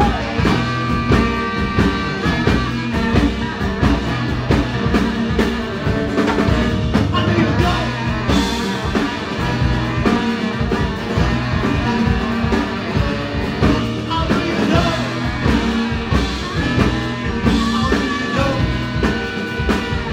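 Live band playing a blues-rock song with a steady beat: electric stage keyboard, saxophones and drum kit, with some singing.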